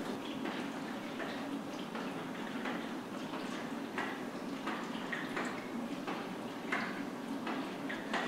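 Water sloshing inside a hand-held film developing tank as it is turned over and back in repeated agitation rotations, with faint knocks, over a steady background hiss.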